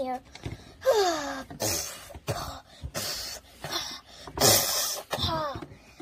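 A person's voice acting out a doll straining to poop: two short moans that fall in pitch, with three breathy, forceful pushes of breath between them, the loudest a little past the middle.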